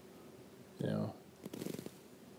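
A man's short, quiet murmured vocal sound about a second in, then a brief breathy vocal sound with a rustle near the end, over faint room tone.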